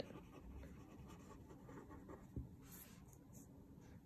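A pen writing on paper, faint scratching strokes as a word is written out by hand, with a soft tap a little past halfway.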